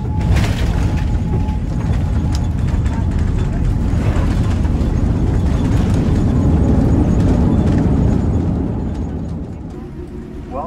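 Loud low rumble inside a jet airliner's cabin as the plane lands, building to a peak and easing off near the end as it slows on the runway.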